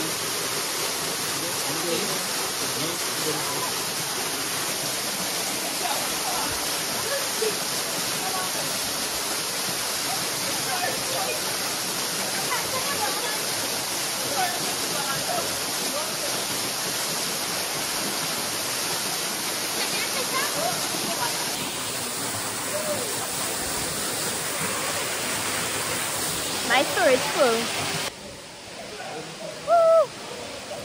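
Waterfall rushing steadily, a continuous hiss of falling water, with faint voices in the background. Near the end a short exclamation cuts through, then the water sound drops away abruptly.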